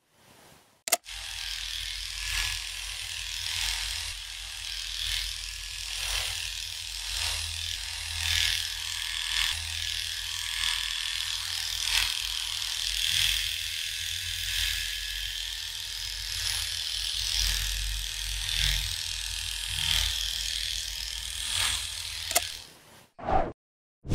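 Electric hair trimmer switching on with a click about a second in, then running with a steady buzz while it is worked through long dog fur, a crisp cutting rasp coming in repeated strokes about once a second.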